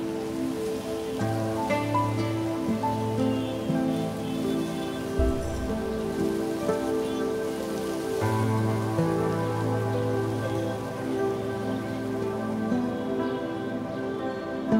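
Background instrumental music of held, overlapping notes, with a low sustained note coming in about a second in and again about eight seconds in.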